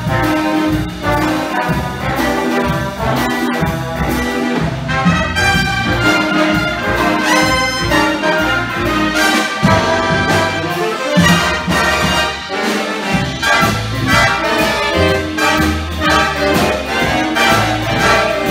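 A jazz big band playing live: a saxophone section and trumpets over electric guitar, keyboard and drum kit, with a steady beat.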